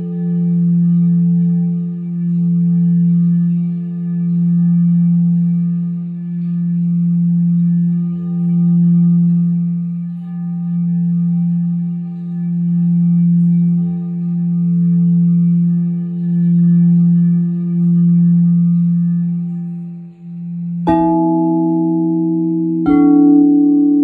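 Crystal singing bowl sounding a steady low tone that swells and fades about every two seconds. About 21 seconds in, a higher-pitched bowl is struck, and it is struck again about two seconds later, ringing over the low tone.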